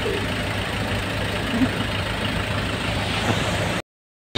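Steady low engine and road rumble of a shared taxi, heard from inside its cabin while it drives. The sound cuts off suddenly just before the end.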